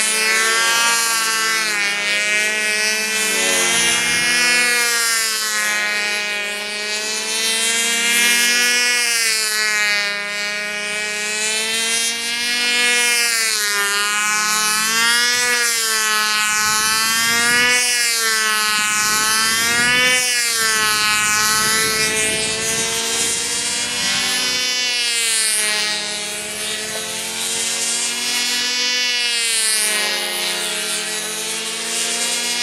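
Small glow engine of a control-line Brodak Ringmaster model plane, an OS .25 LA, running steadily in flight. Its pitch wavers up and down every couple of seconds as the plane circles and flies its manoeuvres.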